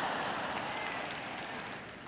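Audience applauding softly, an even hiss of clapping that fades away toward the end.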